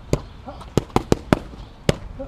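Boxing gloves striking leather focus mitts in quick combinations: about six sharp smacks, the loudest one near the end.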